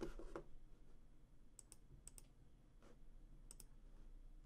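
Near silence: room tone with a few faint, sharp clicks, a couple at the start and then three close pairs spread through the rest.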